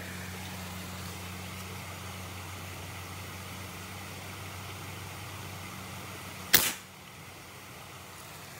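A single sharp snap about six and a half seconds in, the shot of a fish-hunting spear, over a steady low hum.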